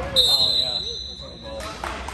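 Referee's whistle: one long shrill blast of about a second and a half that stops play after a scramble for a loose ball on the floor. A second, higher whistle tone joins halfway through, with voices and a few sharp knocks near the end.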